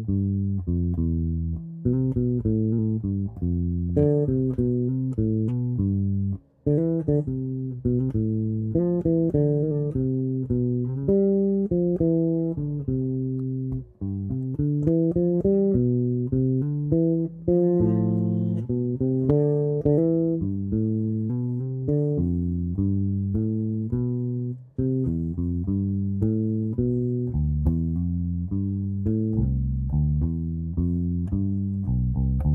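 A Fender electric bass played solo, with no accompaniment, in a run of single plucked notes. It works up and down the scale in a sequence of sixths, with an occasional note added above or below the pattern, pausing briefly about a third of the way in, near the middle and again towards the end.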